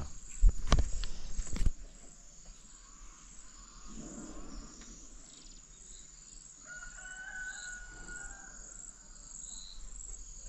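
A rooster crowing once, a long held call from about seven to nine seconds in, over a steady high chirring of crickets. A few loud low thumps come in the first two seconds.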